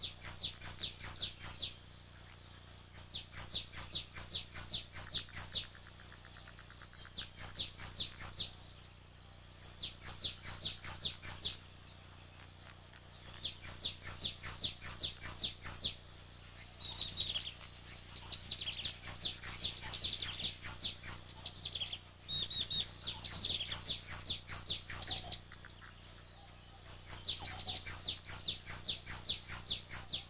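Small birds chirping: bursts of quick, evenly spaced sharp chirps, each burst lasting a second or two and repeating every few seconds. A more varied, warbling song joins in through the middle stretch.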